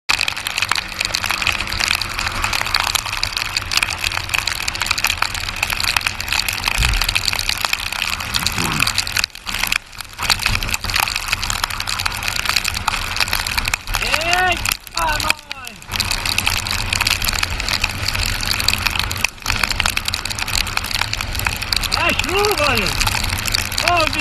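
Steady rush of wind and rain buffeting the camera microphone on a moving motorcycle in heavy rain, briefly cutting out a few times. Short bits of the rider's voice come through around a third of the way in, just past halfway, and near the end.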